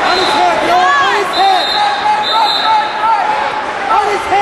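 Busy gymnasium during a youth wrestling match: many short, overlapping squeaks and calls that rise and fall in pitch. Two high steady tones sound in the middle.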